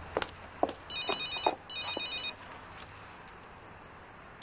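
Mobile phone ringing: two short bursts of a high, warbling electronic ringtone, about a second apart.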